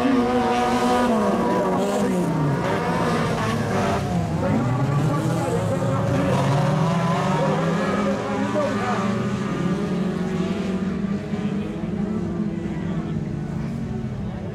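Several race cars' engines on a dirt track, revving hard: the pitch drops off about two seconds in, climbs again as they accelerate away, then holds steady at high revs.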